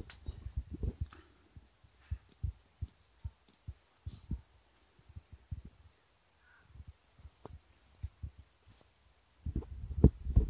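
Soft, dull low thumps at an irregular pace, from walking about with a hand-held camera: footfalls and knocks of the hand on the camera.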